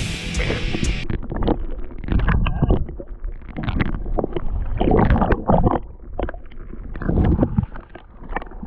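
Muffled water sloshing and gurgling in irregular surges, heard from a camera held underwater.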